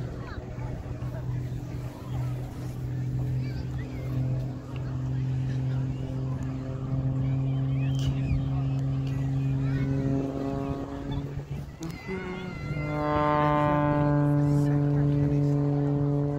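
Aerobatic plane's engine droning overhead as one steady pitched tone. About twelve seconds in it steps up in pitch and grows louder and brighter as the plane pulls up trailing smoke.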